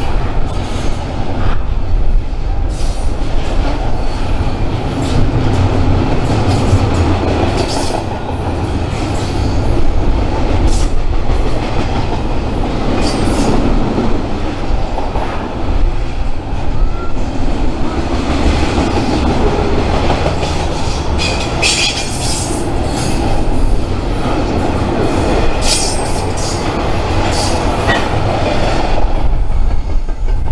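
Double-stack intermodal freight train's well cars rolling past at close range: a steady, loud rumble of steel wheels on rail, broken by occasional sharp clicks and brief higher screeches from the wheels.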